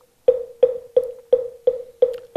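Moktak (Korean Buddhist wooden fish) struck in an even run of about three knocks a second, each a short pitched knock with a brief ring.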